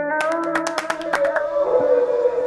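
Electronic hard techno music: held synth notes over a fast ticking percussion line that drops out about one and a half seconds in, leaving the sustained notes.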